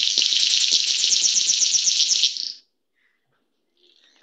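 Male King of Saxony bird of paradise calling: a long, high, buzzing hiss like radio static, made of rapid pulses. It cuts off suddenly about two and a half seconds in.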